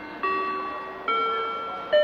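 Railway station public-address chime: bell-like tones climbing step by step in a rising arpeggio, one about every 0.8 s, each ringing and fading, the highest and loudest near the end. It is the signal that a spoken announcement is about to begin.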